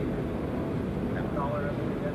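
A steady low rumbling background noise, with a faint voice speaking briefly from off the microphones about a second in.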